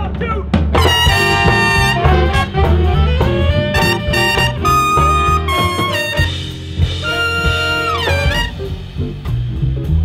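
Live swing band kicking off an instrumental opening: saxophones and brass playing a loud horn line over upright bass and drums, with a falling horn slide near the end.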